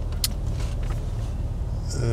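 Car engine running, heard from inside the cabin as a steady low rumble, with one short click about a quarter of a second in.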